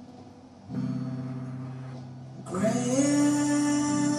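Live acoustic blues: strummed acoustic guitar chords ring and fade, with a fresh strum just under a second in. About two and a half seconds in, a louder note slides up and is held.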